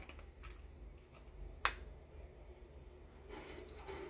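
Handheld electronic diamond tester touched to jewellery: a few faint clicks, then a short run of high-pitched beeps near the end.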